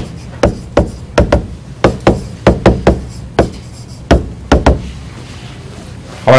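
A stylus tapping and knocking on a tablet screen during handwriting: a quick, irregular run of about fifteen sharp taps, thinning out over the last second and a half.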